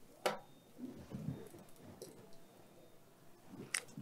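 Faint handling sounds of a plush doll and plastic action figures being set down and arranged on a cloth-covered table, with one sharp click about a quarter second in.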